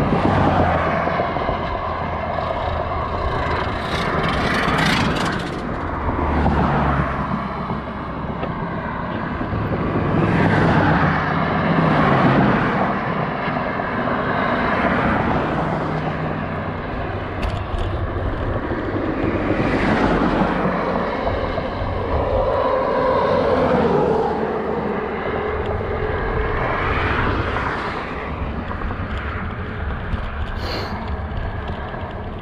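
Highway traffic going past a bicycle on a road shoulder: several vehicles swell up and fade away one after another, over continuous road and wind noise.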